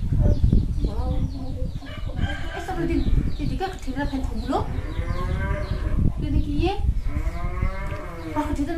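Two long, drawn-out animal calls, each rising and then falling in pitch, come in the second half after a run of shorter voice-like sounds.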